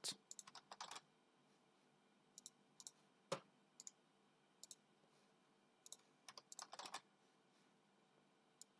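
Faint computer keyboard keystrokes and clicks, scattered in short clusters, as text is copied and entered into a form field.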